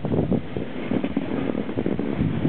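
Wind rushing over the microphone, buffeting unevenly, with the hiss and scrape of a snowboard sliding on packed snow during a fast descent.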